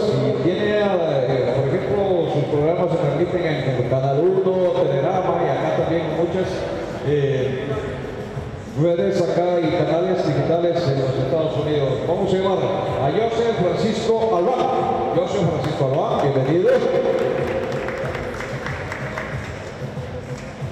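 Only speech: a man talking into a podium microphone, with a short pause about eight seconds in.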